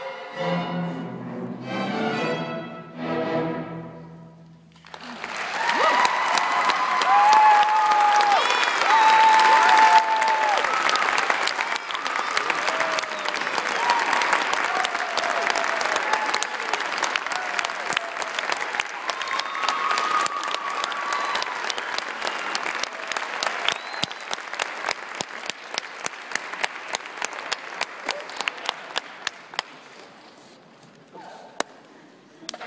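A string orchestra holds its closing chords, which stop about four seconds in. An audience then breaks into loud applause with cheers, thinning to a few separate claps near the end.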